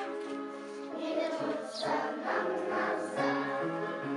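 A song with a group of voices singing together over instrumental music, the notes held and changing every half second or so.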